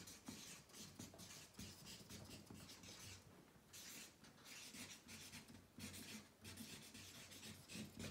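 Marker pen writing on flip-chart paper: faint, quick scratchy strokes as words are written out.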